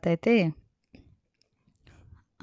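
A woman speaking for about the first half-second, then near silence with a couple of faint clicks.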